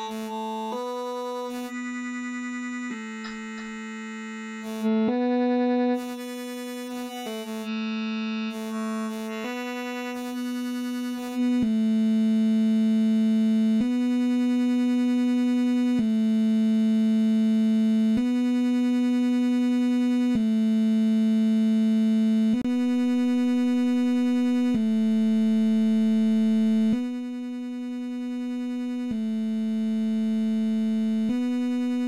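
Bitwig Polysynth saw-wave notes run through iZotope Trash 2 distortion, repeating as sustained notes about two seconds each. The tone keeps changing and thinning over the first ten seconds or so as the effect's modules are adjusted. Then it steadies and gets louder, with a brief drop in level near the end.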